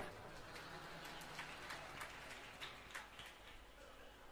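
Faint audience noise in the hall after a joke's punchline: a low murmur with scattered light clicks.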